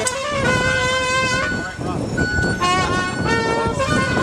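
A live street band of accordion and wind instruments playing a tune, with long held notes that change every second or so.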